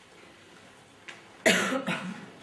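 A single short, loud cough about a second and a half in, close to the microphone.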